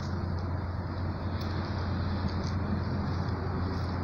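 Steady low rumble of road traffic outdoors, with no single passing vehicle standing out.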